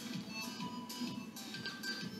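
Quiet background music with a steady beat.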